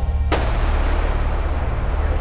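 A single sharp bang about a third of a second in, ringing on in a long echo, over music with a heavy, pulsing bass.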